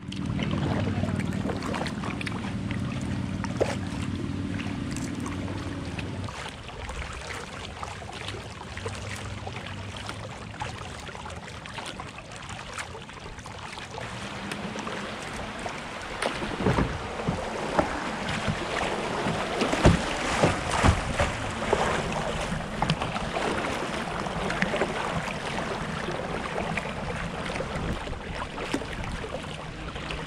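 Kayak moving down a shallow river: water running and splashing around the hull and over a rocky riffle, with wind on the microphone. A cluster of sharper splashes from paddle strokes comes in the middle.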